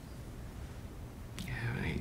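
Quiet room, then near the end a man's short, breathy, whispered vocal sound.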